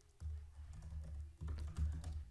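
Quiet typing on a computer keyboard: a quick run of keystrokes starting just after the beginning, with a short pause partway through.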